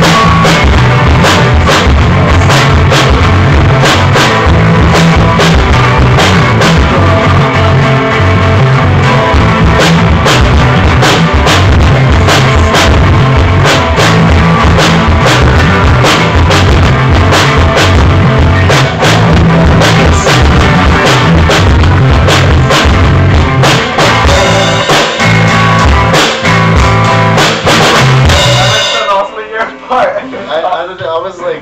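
Live rock band playing amplified through a small room: drum kit with steady kick and snare hits under electric guitars and bass. About a second before the end the song cuts off suddenly, leaving a few quieter, scattered guitar sounds.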